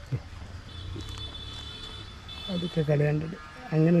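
A man's voice speaking briefly in the second half over a steady low rumble. Before the voice comes in there is a faint, high, steady tone lasting about two seconds.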